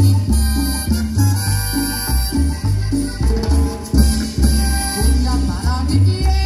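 A live cumbia band playing over concert loudspeakers, with a bouncing bass line under steady shaker-like percussion.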